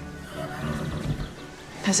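A horse nickering low, after soft background music fades out.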